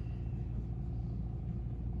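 Room tone: a steady low hum with no other sound.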